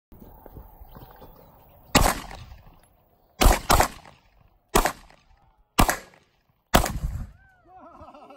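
Six pistol shots fired at irregular intervals of about a second, two of them in quick succession, each followed by a short echo.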